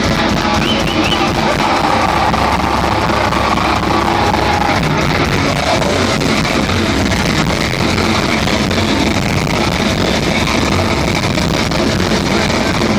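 A heavy metal band playing live at full volume, guitars and drums dense and steady, heard from within the crowd on the floor.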